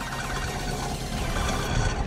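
Onboard sound of a go-kart powered by a 600 cc Suzuki motorcycle engine under way: a steady rush of engine and wind noise on the camera microphone.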